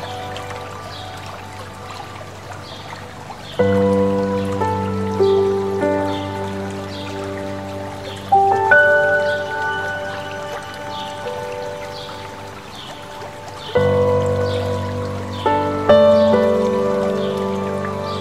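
Slow solo piano music, with chords struck about four times and left to ring and fade, mixed over the steady rush of a mountain stream. Faint short high chirps repeat throughout.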